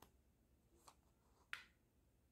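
Near silence broken by three faint, short clicks as a metal duckbill clip is moved and clipped back onto grosgrain ribbon. The last click, about one and a half seconds in, is the loudest.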